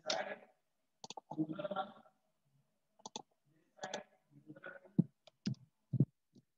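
Irregular computer mouse clicks, single and in quick pairs, the sharpest about five seconds in, with softer muffled noise between them.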